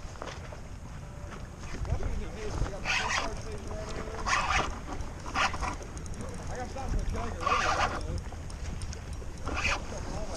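Wind rumbling on the microphone, with small waves slapping against the plastic kayak hull a few times at irregular moments.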